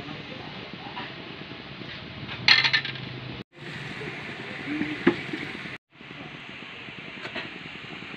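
Steady hiss of a gas burner under a simmering, lidded aluminium pot, with one sharp ringing metallic clink of pot and lid about two and a half seconds in and a lighter click around five seconds in. The sound cuts out completely twice, briefly.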